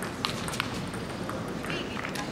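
Sharp clicks of a celluloid table tennis ball, two crisp ones in the first second and fainter ones later, over a steady murmur of voices in a large sports hall.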